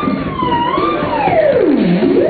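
Theremin playing over electronic backing music. It holds a high note with a slight wobble, then slides steeply down in pitch from about a second in to a low note near the end.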